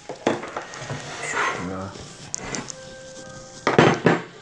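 Bowls knocked and set down on a kitchen countertop: a sharp knock shortly after the start and a louder clatter near the end.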